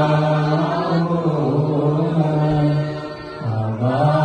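A man chanting an Orthodox liturgical prayer into a microphone, on long held notes with a brief pause for breath about three and a half seconds in.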